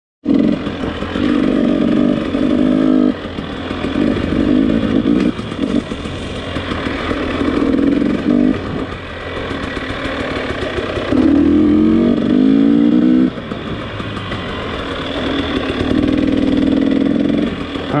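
Dirt bike engine revving in about five bursts of two to three seconds as the throttle is worked on a trail. The pitch climbs under throttle and drops back between bursts.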